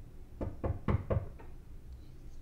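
Four quick knocks on a door, evenly spaced about a quarter second apart.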